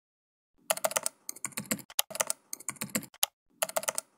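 Keyboard typing: several quick runs of keystrokes with short pauses between them, starting about half a second in.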